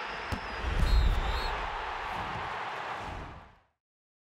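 Broadcast title-graphic transition effect: a whooshing rush with a click, then a deep bass hit about a second in, fading out near the end.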